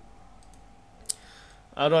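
A single sharp computer mouse click about a second in, with fainter ticks just before it, over low room noise.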